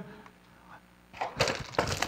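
Near-silent pause, then about a second in a short clatter of several sharp knocks and cracks as something is handled or knocked at the lectern.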